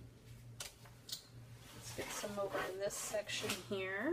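Indistinct voice sounds with no clear words, over a few faint scrapes and clicks of modeling paste being spread through a stencil with a plastic applicator.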